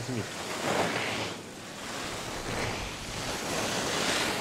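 Ski edges carving and scraping on the snow of a giant slalom course, a hiss that swells with each turn about every one and a half seconds.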